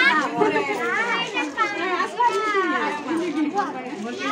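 Several voices talking over one another, women's and children's, in lively overlapping chatter.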